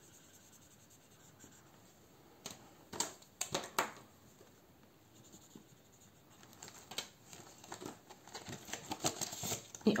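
Quiet desk handling sounds: a marker colouring in squares on a paper savings tracker, with a few sharp clicks and taps a few seconds in. In the last few seconds there is a busier run of small clicks and rustles as the binder's plastic sleeves and pages are handled.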